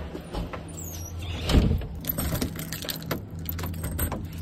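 Keys jangling on a ring and clicking in a door-knob lock as the door is locked, with a louder knock about a second and a half in, over a steady low hum.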